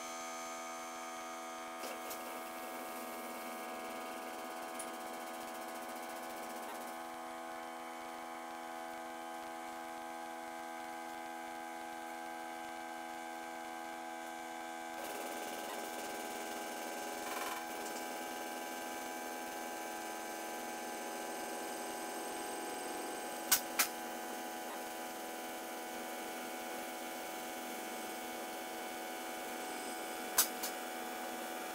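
Electric-hydraulic pump of a scissor car lift running with a steady hum as it raises a van. The hum grows fuller about halfway through, and two sharp clicks come close together about three-quarters of the way in.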